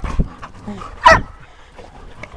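A dog barks once, sharply, about a second in, with quieter short sounds before and after.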